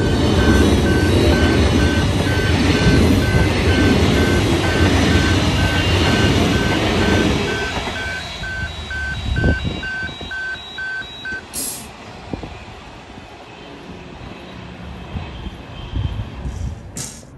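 Electric passenger train passing close by at a level crossing, its rumble loudest for the first seven seconds, then fading away. The crossing's warning alarm beeps at one pitch, a little over twice a second, and stops about eleven seconds in.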